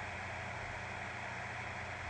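Steady hiss of background noise with a faint low hum, unchanging throughout.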